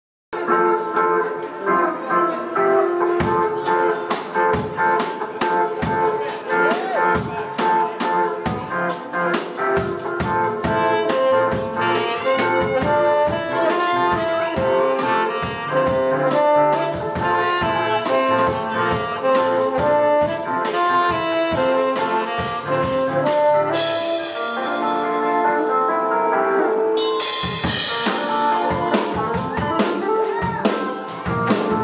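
Live band playing: keyboard, electric guitar and saxophone over a drum kit. The drums come in about three seconds in, thin out briefly under a rising cymbal wash near the end, then the full beat returns.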